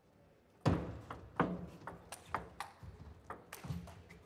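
Table tennis rally: the celluloid ball clicking off the players' rubber-covered bats and bouncing on the table. The sharp knocks come in a quick, uneven run of about three a second, starting just under a second in.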